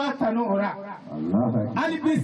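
A man's voice preaching forcefully into a microphone, in drawn-out phrases that rise and fall, with a brief pause about a second in.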